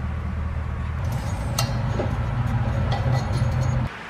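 Steady low rumble with a few faint clicks, cutting off suddenly near the end.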